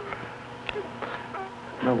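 A woman crying quietly, with a few faint whimpers and sniffs, over a steady electrical hum in an old film soundtrack.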